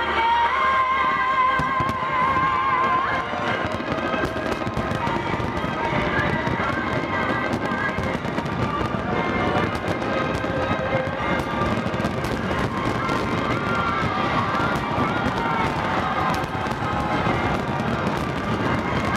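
A large fireworks display bursting and crackling without a break, with music playing over it.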